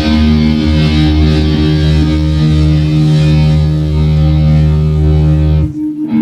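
Loud distorted electric guitars and bass holding a sustained, ringing chord with no drums. Near the end the sound cuts off sharply, and a new held chord starts just after.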